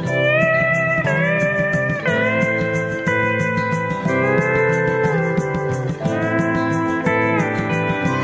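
Instrumental passage of a country song: a steel guitar slides up into each note, about once a second, over a steady band beat.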